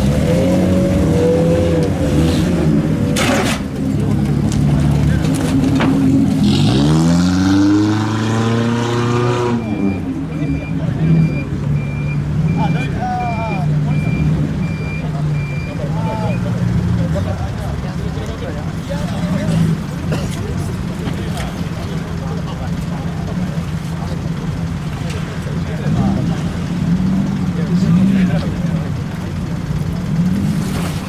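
Car engines running at low speed as lowered cars creep over a ramp. About seven seconds in, an engine revs up over roughly three seconds and cuts off abruptly, followed by a steady repeating beep for about six seconds.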